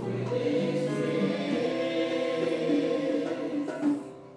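A church choir singing an offertory hymn in sustained, held notes, stopping near the end.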